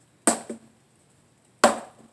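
Two sharp strikes of a talwar against a tape-wrapped wooden practice pell, about a second and a half apart, each followed by a lighter knock.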